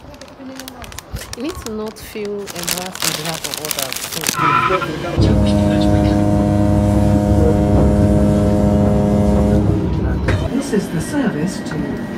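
Passenger train running at speed: a loud low rumble with a steady hum, starting suddenly about five seconds in and cutting off about five seconds later. Indistinct voices come before and after it.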